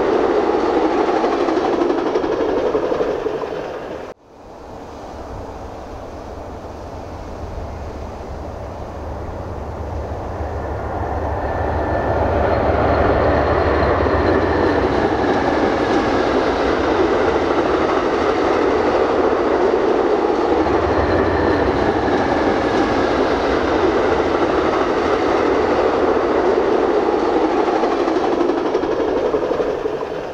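Amtrak Superliner passenger train rolling past on the rails: a steady rush of wheel and car noise with some clickety-clack. It cuts off suddenly about four seconds in, then builds back up, holds steady, and fades away near the end as the train passes.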